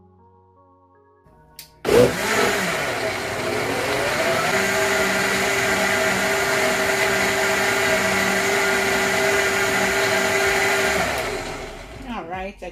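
High-powered countertop blender switching on about two seconds in, its motor climbing in pitch as it spins up, then running steadily as it purées a thick green smoothie. It winds down near the end.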